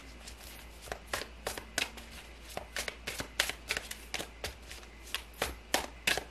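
A deck of tarot cards being shuffled by hand: short, sharp card-on-card slaps and flicks in an uneven run, a few a second.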